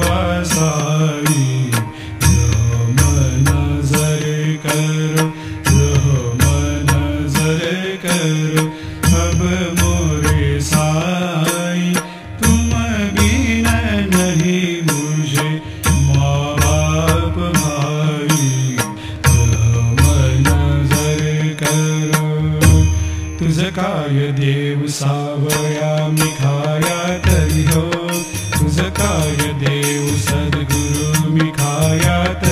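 Temple aarti music: voices chanting a devotional hymn over a steady beat of deep drum strokes and clashing cymbals.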